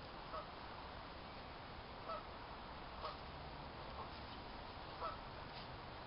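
Geese honking, a handful of short, faint calls spaced a second or so apart, over a steady low background hiss.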